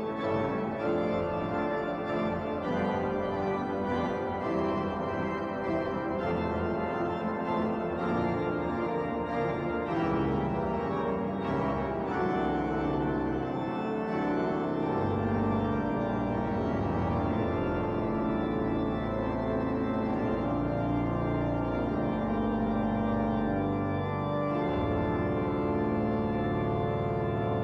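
Pipe organ playing a full, steady passage of sustained chords, with deep bass notes coming in strongly about fifteen seconds in.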